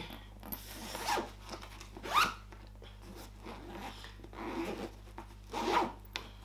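Zipper on a fabric sports bag pulled in several short strokes, with a rising zip about two seconds in and the loudest stroke near the end.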